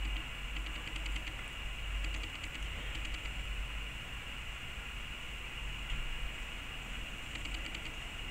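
Steady background hiss with a low hum, like a running fan or recording noise, and a few faint small clicks in short clusters over the first three seconds and again near the end.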